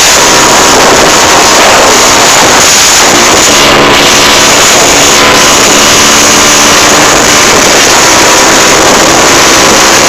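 Motorcycle riding steadily at road speed: loud wind rush on the microphone mixed with the engine's steady drone.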